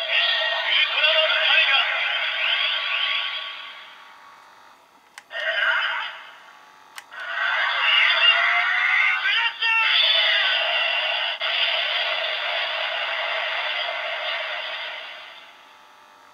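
DX Blazar Brace toy playing its built-in electronic sound effects, music and a recorded voice call of "Strium Blaster!" from its small speaker as it reads a Blazar Stone. The sound is thin, with no bass. It comes in stretches: one fades out about four seconds in, a short burst follows, and a long stretch starts near the middle and fades away near the end.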